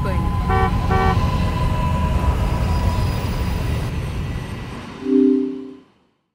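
Street traffic noise: a steady low rumble of vehicles, with two short car-horn honks about half a second and a second in, and a louder, deeper held horn blast near the end. Then the whole din cuts off suddenly into silence.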